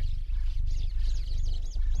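Wildlife sound effects: a run of short bird chirps over a steady low rumble, which is the loudest part.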